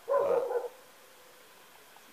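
A single brief animal call, a pitched yelp about half a second long near the start, followed by quiet background.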